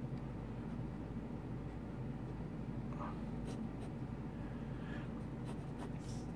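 Pencil lead scratching on drawing paper as short lines of a rectangle are sketched, a soft steady scratch with a few faint sharper strokes.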